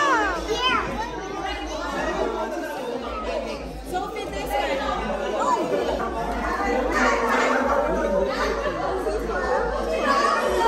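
Many children and adults chattering at once, overlapping voices with no single speaker standing out, in a large room.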